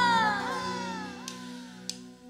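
A woman's high sung note, loud at first, sliding downward in pitch as it fades over about a second and a half, over a sustained backing chord from the band. Two soft, evenly spaced ticks come in the second half.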